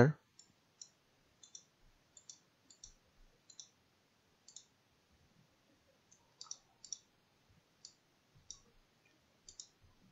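Faint computer mouse clicks, about twenty scattered irregularly, some in quick pairs.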